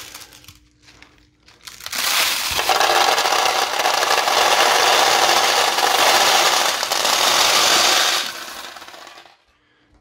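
A cupful of steel pachinko balls poured into the empty back hopper of a 1973 Nishijin Model A pachinko machine: a dense metallic clatter that starts about two seconds in, holds for about six seconds and then dies away.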